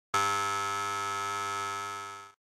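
A single electronic buzzer-like tone that starts sharply, holds steady for about two seconds and then fades out quickly.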